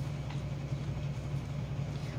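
Steady low background hum with no other clear sound.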